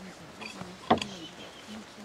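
Faint, indistinct voices in the background, with one sharp click about a second in.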